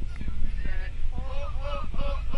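Several passengers' voices shouting and chattering inside a coach bus, louder in the second half, over the steady low rumble of the bus.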